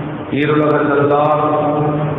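A man chanting Arabic in long, held melodic notes, with a short break and a downward slide about a third of a second in before the next held phrase.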